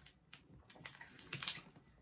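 Faint crackling of a plastic snack-bar wrapper handled between the fingers: a run of small, irregular clicks.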